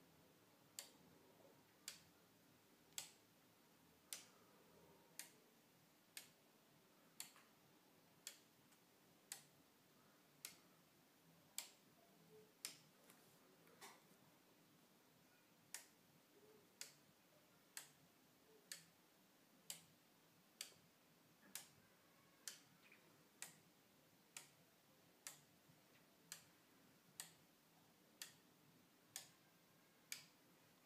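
Faint, sharp single clicks, roughly one a second, as the bits of the B and C inputs are toggled one by one on DIP switches and the relays on the relay computer's ALU cards switch in response.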